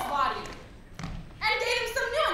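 Actors' voices delivering lines on a stage, broken about a second in by a single dull thump.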